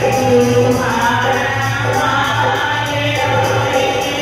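Punjabi devotional bhajan sung by women's voices to harmonium and dholak, with a steady beat.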